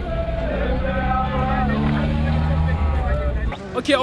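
People talking indistinctly over a steady low rumble; the rumble cuts off suddenly about three and a half seconds in.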